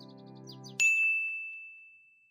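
Background music with falling high tinkly notes stops abruptly under a second in, and a single bright bell-like ding strikes and rings on one high tone, fading slowly.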